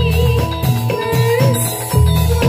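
Javanese gamelan music accompanying a jathilan dance: metallophones ringing over drum strokes about twice a second, with a wavering melody line above.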